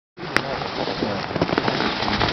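Race skis carving on hard-packed snow, a steady crackling scrape with a sharp click near the start.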